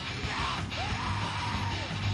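Rock song playing: a yelled vocal over a steady bass line, the voice holding a long note from about a third of the way in that slides up at its start and falls away at its end.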